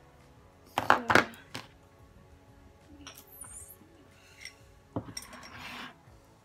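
Makeup containers and brushes handled on a tabletop: two sharp knocks about a second in, then a few light clicks and a brief rustle near the end.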